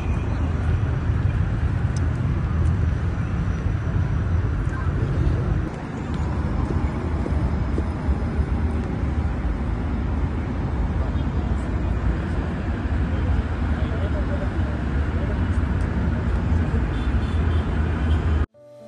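Steady outdoor background noise dominated by a heavy low rumble, with a brief dip about six seconds in.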